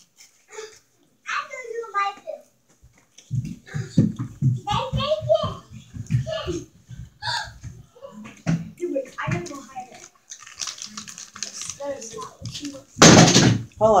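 Household voices, including children's, talking in the background over close-up eating and handling noises. About a second before the end comes a loud, brief crinkle of a foil snack bag or plastic container being handled close to the microphone.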